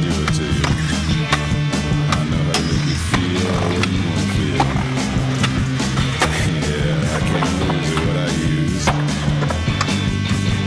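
Skateboard sounds, wheels rolling on concrete and sharp pops and landing knocks, mixed over a music track with a steady bass line.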